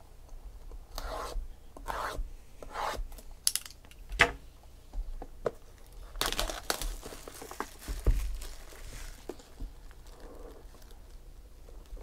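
Plastic shrink wrap being torn and peeled off a cardboard trading-card box, in short crinkling, tearing strokes with a denser burst of crinkling past the middle. There is a soft bump of the box being handled about eight seconds in.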